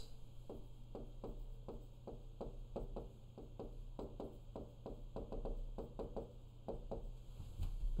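Stylus tapping and clicking on a touchscreen display while handwriting words: a faint, irregular run of short taps, several a second.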